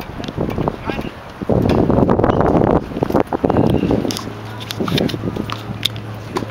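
Wind buffeting the microphone in a loud rumble for about two seconds near the middle, over faint distant voices.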